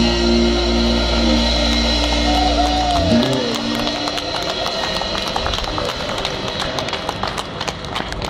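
A live rock band's final chord rings out on electric guitar and bass, with a last sung note sliding down, and stops about three seconds in. Audience applause follows.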